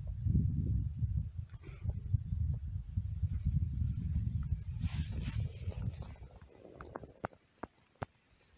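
Wind buffeting the microphone: an uneven low rumble that dies away after about six seconds, leaving a few faint sharp clicks near the end.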